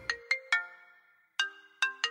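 Mobile phone ringtone playing a melodic tune of short ringing notes, starting about one and a half seconds in after a few last notes of background music die away.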